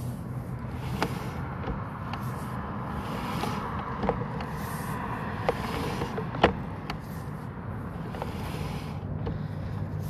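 Sewer inspection camera being pulled back through a cast-iron drain line: a steady low mechanical hum with a few sharp clicks and knocks, the loudest about six and a half seconds in.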